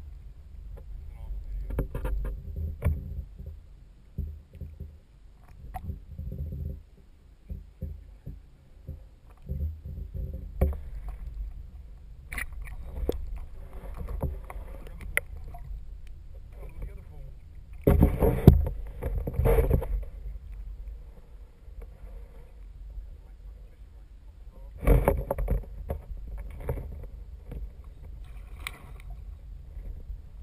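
Muffled underwater sound picked up by a GoPro Hero 3+ in its waterproof housing: a steady low rumble of water against the case, with scattered knocks and a few louder bursts of noise, the strongest about two-thirds of the way through.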